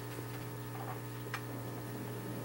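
Steady low electrical mains hum from the sound system, with one faint tick about a second and a half in.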